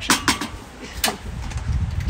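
A few sharp clicks and scrapes of a wooden spoon against a metal saucepan of thick béchamel, then a low rumble over the second half.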